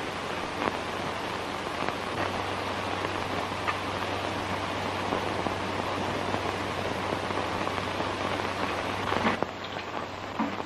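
Steady hiss and faint crackle of an old optical film soundtrack, with a few light clicks and no speech or music.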